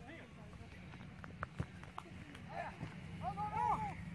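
Men calling and shouting to one another across a soccer field, louder in the second half, after a few sharp knocks about a second in.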